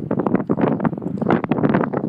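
Wind buffeting the microphone of a handheld camera, an uneven rushing noise that rises and falls in gusts.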